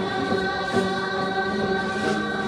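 A group of voices singing a Dolpo dance song in unison, holding long, steady notes.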